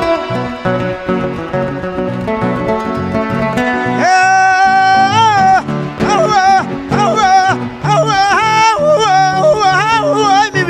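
Acoustic guitar playing a Panamanian mejorana-style tune, joined about four seconds in by a man's wordless sung lament of long, wavering held notes in several phrases, the vocal opening of a sung décima.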